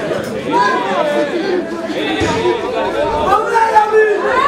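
Several voices talking at once, an indistinct babble of overlapping speech.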